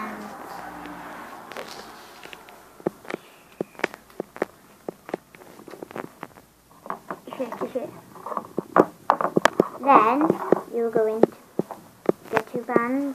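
Quick, irregular small clicks and taps of a hook and rubber loom bands being worked on the pegs of a plastic loom, with a voice near the end.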